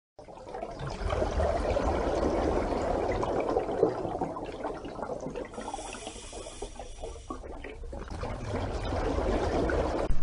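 Rushing, bubbling water noise with a low rumble, strongest in the first half, thinning out in the middle and swelling again near the end.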